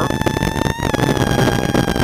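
Plymouth Neon rally car's four-cylinder engine running hard, heard from inside the car over a dense rush of tyre and snow noise. The engine note lifts briefly about a second in, then sinks slowly.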